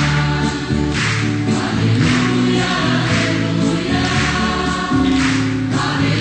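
Choir singing the Gospel acclamation at Mass, with long held notes that change about once a second.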